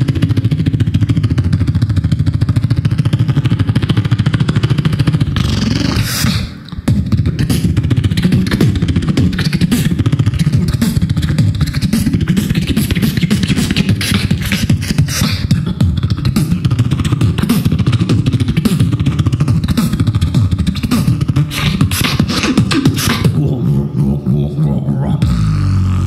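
A beatboxer imitating a helicopter with his mouth into a hand-cupped microphone, heard through a PA as a fast, continuous pulsing with a heavy low end. There is a brief break about six and a half seconds in.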